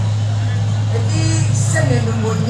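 A woman's voice amplified through a public-address microphone, with a loud steady low hum underneath; her speech picks up again in the second half.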